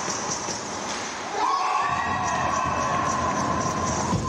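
Cheering and high-pitched shouting in an ice rink as a goal is scored. About a second and a half in, a loud steady horn-like tone swoops up and then holds, and the cheering swells.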